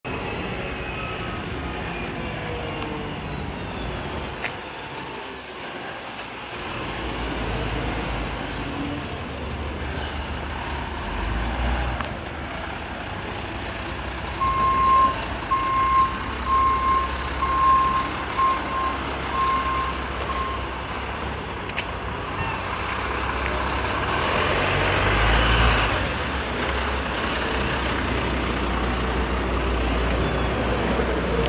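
Garbage truck's diesel engine running low and steady, with a reversing alarm beeping about seven times in the middle. Near the end there is a louder rush of truck noise, and there are two sharp knocks earlier on.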